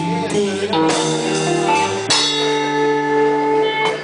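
A live band playing electric guitar and bass guitar with drums, holding sustained chords that change about two seconds in.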